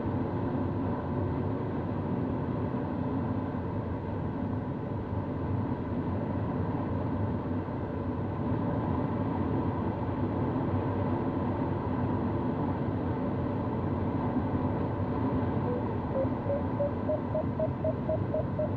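Steady rush of air around a sailplane cockpit in gliding flight. Near the end a variometer starts beeping in quick, even pulses that rise in pitch, the sign that the glider is climbing in rising air.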